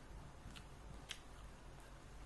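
Near silence: quiet room tone with a couple of faint clicks, about half a second and a second in.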